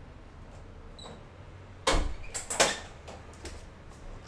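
A room door being opened and shut, heard as two loud, sudden bangs about two seconds in, the second the louder.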